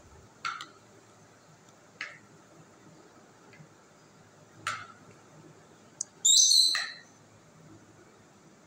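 A spoon clinking against dishes while pickle is stirred in a bowl: three short sharp clicks a second or two apart, then a louder, brief ringing clink about six seconds in.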